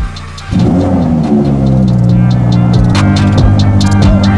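Audi R8's V10 engine starting about half a second in: the revs flare, fall and settle into a steady idle, with electronic music playing over it.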